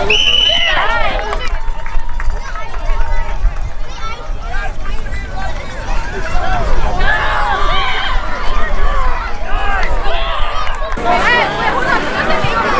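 Many voices of spectators and players shouting and calling out at once, with a burst of shouting at the start and another in the second half.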